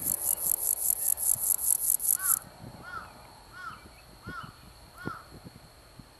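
An insect's rapid, even, high pulsing buzz, about six pulses a second, cuts off abruptly a little over two seconds in, leaving a thin steady high insect tone. Then a bird calls five times in quick, even succession.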